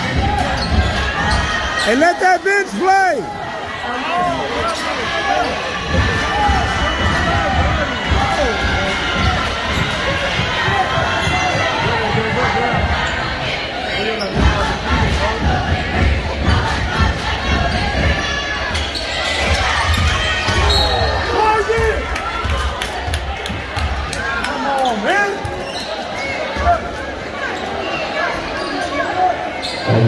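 Basketball game on a hardwood gym floor: a ball bouncing again and again, and sneakers squeaking in short chirps, the clearest about two seconds in, over the echoing chatter of the crowd.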